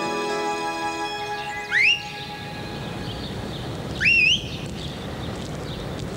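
A held music chord fades out over the first second or two, leaving a steady noisy background. Two loud whistles, each a quick rising glide and the second ending with a wavering lift, sound about two seconds apart.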